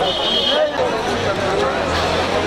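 Crowd of people talking over one another at close range, many voices at once.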